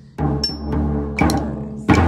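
A drum struck with wooden drumsticks in slow, even quarter-note beats: three strokes under a second apart, each left ringing with a low boom.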